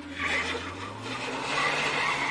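Sound effect of a car pulling away: a low engine rumble with road and tyre noise, and a tyre squeal coming in near the end.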